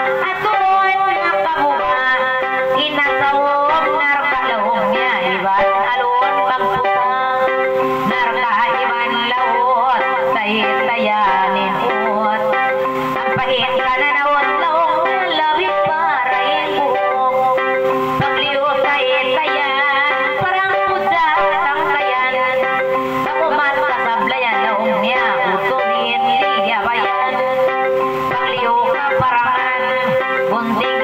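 A woman singing a Tausug kissa in a wavering, ornamented voice over an electronic keyboard accompaniment that holds steady drone-like notes.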